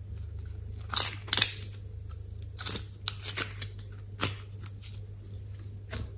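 Glossy slime and soft clay handled by hand, giving a scatter of sharp sticky crackles and pops, loudest about a second in, over a steady low hum.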